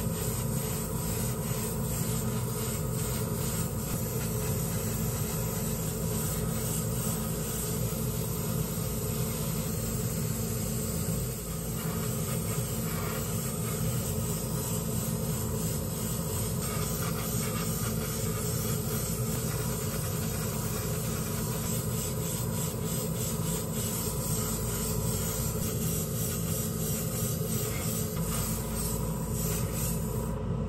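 Gravity-feed airbrush spraying paint: a steady hiss of air over a steady low hum, dipping briefly about eleven seconds in.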